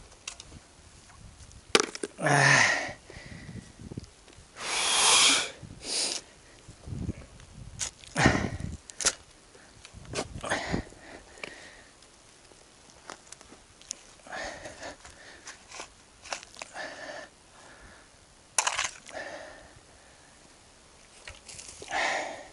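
A shovel being driven into and scraping through hard soil full of big roots: irregular sharp knocks and scrapes a few seconds apart, mixed with the digger's breathing and huffs of effort.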